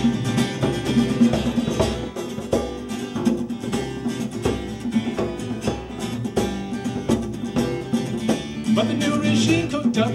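Instrumental break in a folk-rock song: strummed acoustic guitar and electric bass over a steady beat on a djembe.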